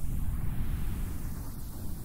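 Electronic noise-ambient music: a dense, crackling low rumble with a hiss above it that swells and fades in slow waves about every two seconds.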